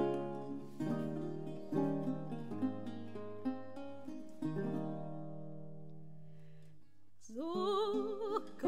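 Historical guitar playing the opening of a song, chords plucked about once a second and left to ring and fade. A soprano voice comes in near the end, singing with a wide vibrato.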